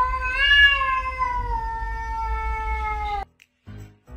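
Cat giving one long, drawn-out meow that rises at the start and then slowly sinks in pitch. It is cut off suddenly a little after three seconds in.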